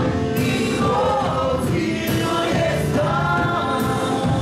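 Live worship band of keyboard, drums and guitar playing a Polish worship song, with several voices singing together over it and a cymbal struck about once a second.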